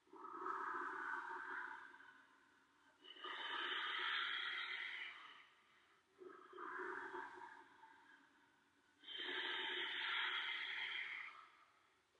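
A man breathing deeply and audibly, paced to slow cat–cow stretches: four long breaths, in and out twice, each lasting about two seconds, with a short pause between them.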